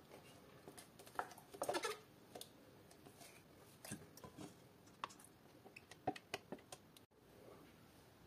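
Faint, scattered soft scrapes and squelches of a silicone spatula scraping thick yogurt out of a plastic tub into a stainless steel pot.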